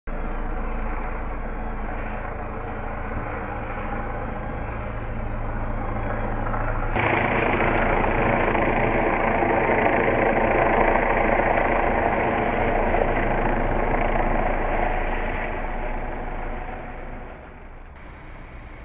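Steady drone of a vehicle engine running, jumping abruptly louder about seven seconds in and fading away near the end.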